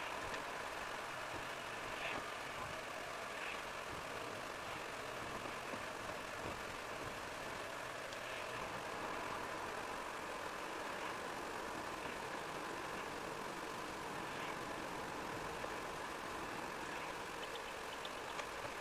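Steady in-car driving noise of a car on a wet road, engine and tyre noise picked up inside the cabin by a windscreen dashcam.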